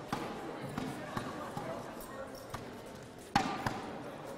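Indistinct background chatter with scattered sharp knocks and thumps, the loudest about three and a half seconds in.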